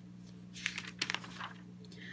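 A page of a paper ring binder being turned by hand: faint paper rustling with a few small clicks, from about half a second in until near the end, over a steady low hum.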